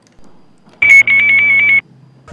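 Brazilian electronic voting machine (urna eletrônica) sounding its confirmation beep after the CONFIRMA key is pressed: a loud, high, fast-warbling beep lasting about a second that cuts off suddenly, the signal that the vote has been recorded.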